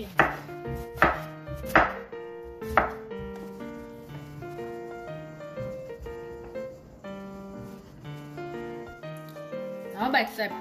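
A large kitchen knife chopping through peeled eggplant onto a wooden cutting board: four sharp chops in the first three seconds. Background music with steady notes plays throughout.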